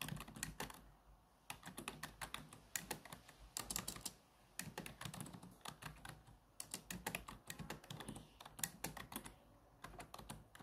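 Laptop keyboard being typed on: quick runs of key clicks with a few short pauses between words.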